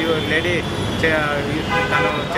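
A man talking in Telugu, close to a handheld microphone, with street traffic noise behind him.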